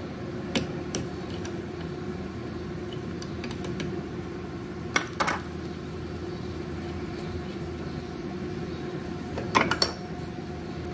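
Small hand wrench and metal parts of a spring-loaded Bijur one-shot lube pump clicking as the cap is undone in a vise: a few light metallic clicks over a steady background hum, then a louder cluster of clinks near the end as the cap, spring and rod come free.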